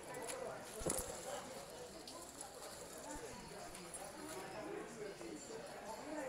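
Faint, indistinct voices talking in the background, with one sharp knock about a second in.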